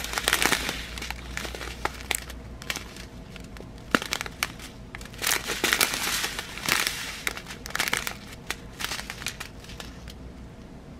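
Small clear plastic bags of round resin diamond-painting drills being handled, crinkling in irregular bursts with the beads shifting inside, and one sharp click about four seconds in.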